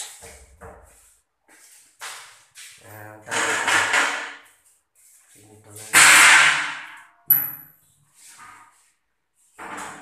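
Metal cabinet door being opened: a loud scraping rush about six seconds in, followed by a sharp click with a brief high ring.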